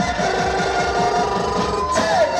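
Live Roman havası dance music: a davul drum keeps a fast, steady beat under a single long held note that flutters rapidly, from about a quarter second in until near the end.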